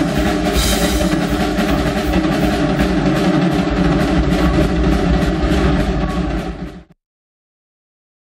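Live drum kit solo: fast strokes on the drums with cymbal crashes, loud in a concert hall. The sound stops suddenly about seven seconds in.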